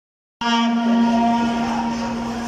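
A voice holding one long chanted note of a mourning lament (noha) over the murmur of a large crowd. The sound cuts in abruptly just under half a second in.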